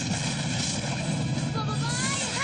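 Cartoon sound effect: a steady rushing noise over a low hum, with whistling tones gliding up and down near the end.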